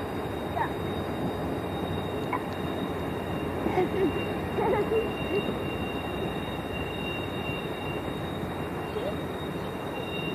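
Steam-hauled passenger train rolling around the curve at a distance: a steady rumble of cars on the rails, with no distinct exhaust beat.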